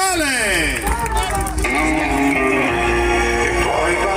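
Loud music with voice played over a carnival float's sound system, opening with a long falling pitch sweep and moving into held notes.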